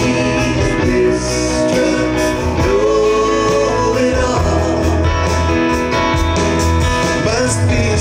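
Live folk-rock band playing an instrumental break, with fiddle over electric guitar, banjo, keyboards, bass and drums.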